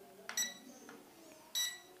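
S160 drone's remote controller giving two short high beeps about a second and a quarter apart as it is switched on and links up with the drone.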